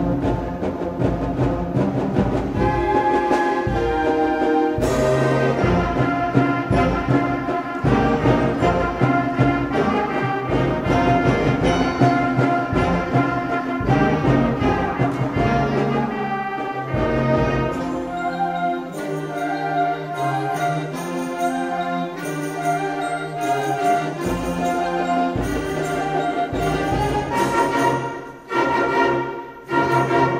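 Seventh-grade middle school concert band playing a piece, the full ensemble sounding together throughout. Near the end the loudness dips briefly before the band comes back in.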